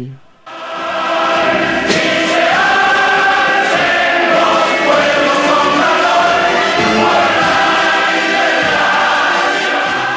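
Many voices singing together in chorus, loud and steady; it fades in about half a second in and fades out near the end.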